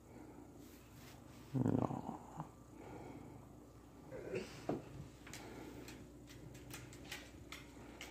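A domestic cat making a short, low vocal sound about one and a half seconds in, and a briefer one a little after four seconds in, with faint clicks through the rest.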